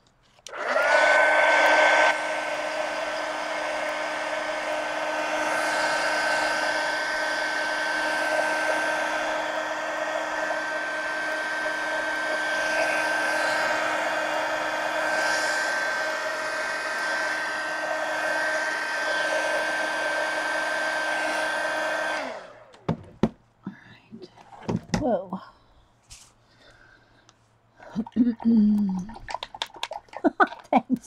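Handheld heat gun blowing hot air to dry wet paint. It switches on with a whine that rises to a steady pitch, is louder for the first second or so, runs steadily for about twenty seconds, then is switched off.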